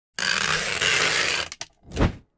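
Logo-animation sound effect: about a second and a half of dense whirring noise, a couple of quick clicks, then a short deep whoosh-thud as the logo lands near the end.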